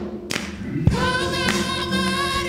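Gospel praise team singing in harmony. After a brief lull at the start, the voices come back in on held notes about a second in, with a few low thumps underneath.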